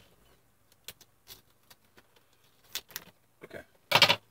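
Scissors and small cardboard milk cartons being handled as a three-pack is cut open and pulled apart: scattered short clicks and crinkling rustles, with a louder rustle near the end.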